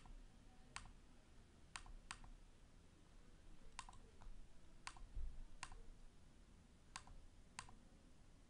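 Faint clicks of a computer mouse button: about nine single clicks at irregular intervals, some followed at once by a second softer tick.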